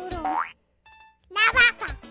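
A girl's voice singing over a bouncy beat, capped about half a second in by a rising cartoon boing. After a brief gap the voice comes back loud and high, mimicking a cow's moo.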